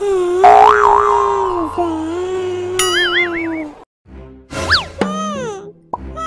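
Cartoon sound effects over music: a held, wavering tone, then a springy wobbling boing about three seconds in. After a short gap there is a quick falling whistle and a few short, falling squeaky sounds near the end.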